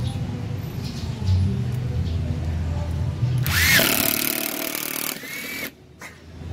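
Makita 12V cordless screwdriver running under load, driving a screw into hardwood. It runs steadily, with a louder, harsher stretch past the middle, and stops just before the end.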